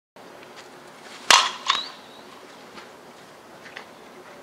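A softball bat strikes a pitched ball with a sharp crack about a second in, followed less than half a second later by a second, weaker knock with a brief ring.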